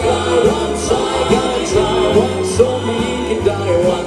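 Male vocal group singing together into microphones over a live band, with pulsing bass and drums.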